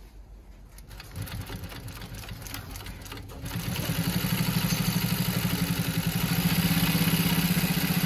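Consew 206RB-5 industrial walking-foot sewing machine stitching through eight layers of fabric: a few slow stitches at first, then a fast, even run of stitches from about three and a half seconds in that stops sharply at the end.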